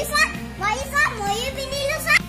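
Children's high-pitched excited voices calling and squealing, with loud peaks about a quarter second in, a second in and at the end, over steady background music.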